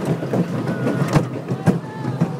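Roller coaster train of Rudy's Rapid Transit Coaster running along its track with a steady rumble. Sharp knocks come twice in the second half as the car jolts along the rails.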